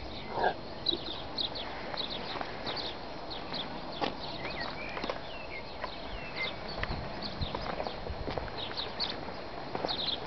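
Birds chirping steadily in the background, with scattered irregular knocks and footsteps as someone moves around scrapped cars.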